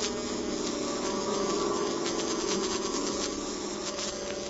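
Steady buzzing drone of a 1950s radio-drama sound effect, with faint scattered ticks.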